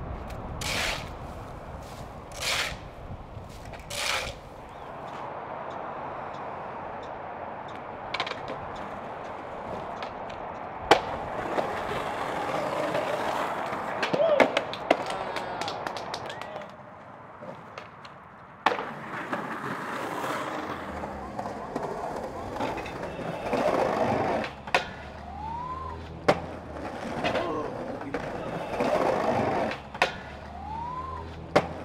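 Skateboard wheels rolling over rough concrete, broken by several sharp cracks of the board popping and slapping down on landings and bails.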